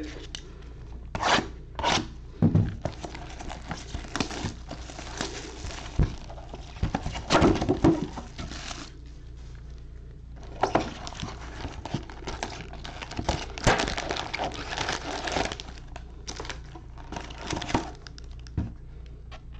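Plastic shrink wrap crinkling and tearing in irregular bursts as it is stripped off a sealed trading-card box, then the cardboard box opening and the wrapped card packs rustling as they are handled, after a short lull about nine seconds in.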